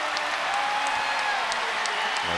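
Basketball arena crowd cheering and applauding steadily after a home-team three-pointer drops.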